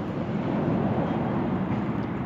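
Wind blowing across a phone's microphone outdoors, a steady low rumbling noise.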